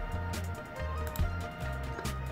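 Background music with a steady low bass line, with a few faint clicks.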